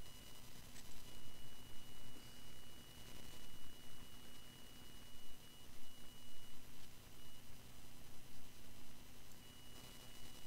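Room tone from a recording setup: an even hiss with a steady low hum and a thin high whine that drops out now and then. There is one faint click about a second in.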